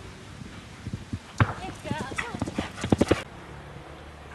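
Hoofbeats of a horse galloping on turf as it lands over a cross-country fence, a quickening run of thuds that cuts off abruptly just over three seconds in.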